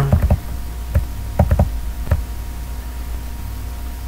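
A handful of short clicks and taps at the computer as the web page is scrolled down: a quick cluster at the start, then a few single clicks over the next two seconds, over a steady low hum.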